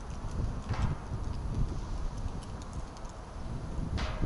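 Footsteps on pavement with wind rumbling on the microphone.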